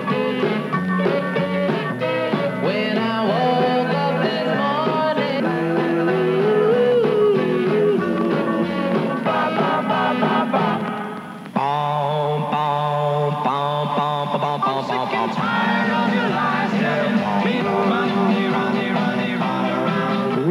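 Oldies rock-and-roll record with singing, heard as an AM radio broadcast. About eleven and a half seconds in the music dips briefly and a different-sounding passage starts.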